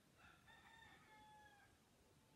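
Faint, distant animal call: one long drawn-out call of about a second and a half, its pitch easing slightly downward toward the end.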